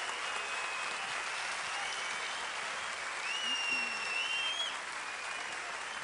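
Large audience applauding steadily, with a few thin high whistle-like tones over the clapping about halfway through.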